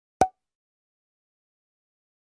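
A single short pop with a brief ring in the middle of the pitch range, lasting about a tenth of a second.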